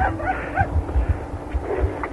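Brief laughter and low thumps of handling or vehicle rumble, heard down a crackly mobile-phone line on air.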